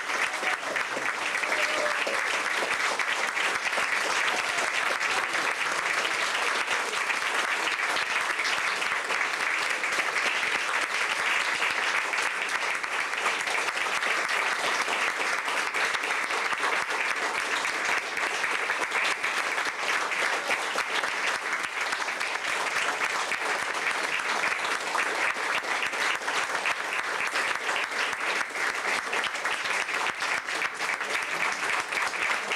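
Theatre audience applauding steadily during curtain-call bows.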